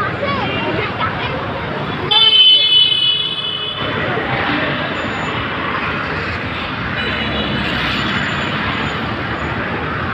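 Busy street traffic and crowd noise, with a vehicle horn sounding once for about a second and a half a couple of seconds in.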